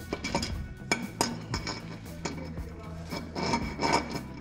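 A metal adapter plate being turned by hand against a transmission case, giving short irregular metal clinks and scrapes as its bolt holes are tried in one position after another, over background music.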